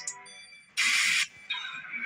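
Background music breaks off, followed by a short, loud hiss-like burst lasting about half a second near the middle. Music starts again just at the end.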